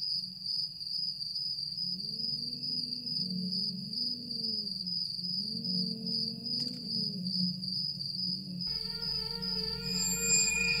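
Dark ambient film score: low sustained tones that swell and fall away twice, over a steady high chirring of crickets. Near the end the music shifts, adding higher held tones and a low rumble.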